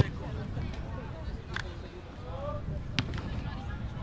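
Sharp thuds of a football being kicked, one right at the start and another about three seconds in, over a low wind rumble and faint distant shouting.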